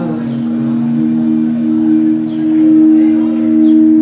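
A sustained musical drone of two steady held tones that swell slowly, with soft lower notes shifting underneath, in a pause between sung phrases of a sound-healing session.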